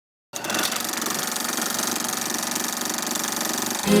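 A steady, fast mechanical-sounding rattle that starts just after the beginning and keeps an even pulse; near the end, guitar music and singing come in over it.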